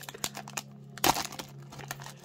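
Foil booster-pack wrapper crinkling faintly as it is handled and the cards are drawn out, with one sharper crackle about a second in.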